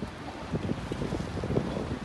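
Wind buffeting a phone's microphone outdoors, an uneven rumbling hiss with irregular gusts.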